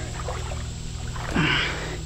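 Creek water sloshing and trickling as a wet hoop net turtle trap is lifted and handled, with a brief louder rush about one and a half seconds in.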